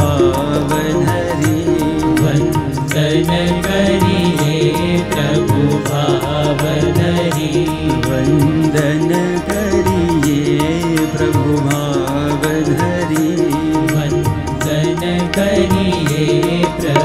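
Indian devotional music: a harmonium melody over a steady, quick tabla and pakhawaj drum rhythm, played without pause.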